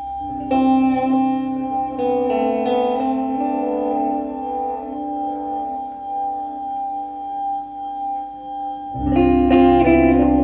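Glass harmonica playing long, held, ringing tones under plucked guitar chords that ring on. A deep bass note comes in about nine seconds in, from foot-played bass pedals.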